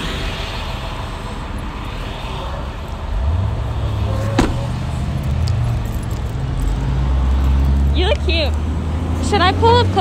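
Car engine humming, heard inside the cabin. The hum strengthens about three seconds in and drops lower in pitch about two-thirds of the way through. There is a single sharp click about four and a half seconds in.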